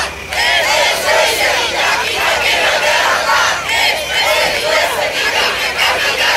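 Large crowd of demonstrators shouting and chanting together, many voices overlapping at once, with a brief dip just after the start.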